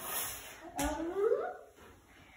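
A toddler's short wordless vocal sound, rising in pitch, about a second in, just after a light knock.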